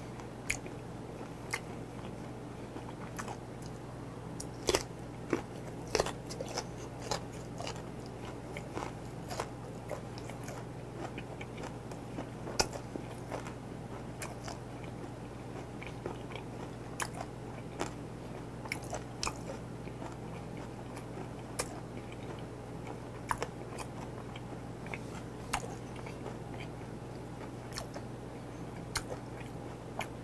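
Close-up chewing of raw gizzard shad (jeon-eo) sashimi, with irregular crisp, crunchy clicks as it is bitten and chewed, over a steady low hum.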